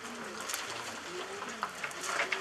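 A dove cooing: a few low, soft, drawn-out notes.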